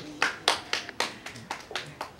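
Hands clapping in a steady rhythm, about four claps a second, stopping near the end.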